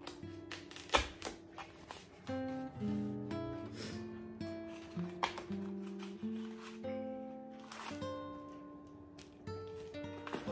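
Background acoustic guitar music, plucked notes changing steadily, with scattered rustles and clicks of duct-tape wrapping being pulled apart by hand, a sharp click about a second in.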